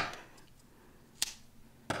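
Scissors snipping the ends of chunky yarn: two sharp clicks about two-thirds of a second apart, the second one louder.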